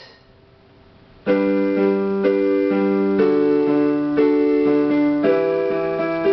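Electronic keyboard in a piano voice playing sustained chords, starting about a second in after a brief pause, with a new chord struck every half second to a second.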